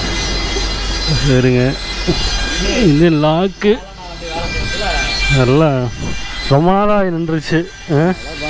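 A man's voice in several drawn-out, sing-song phrases with wavering pitch, the longest and loudest arching up and down near the end. A low steady hum runs underneath and stops about six and a half seconds in.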